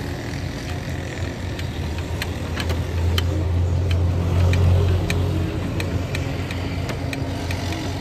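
A motor engine running with a steady low drone that swells in the middle, with scattered light clicks over it.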